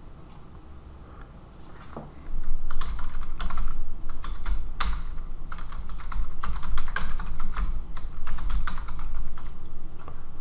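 Typing on a computer keyboard: after a quiet start, a fast, uneven run of key clicks begins a little over two seconds in and goes on, with a low rumble under the keystrokes.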